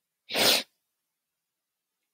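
A person sneezing once, a short sharp burst about half a second in.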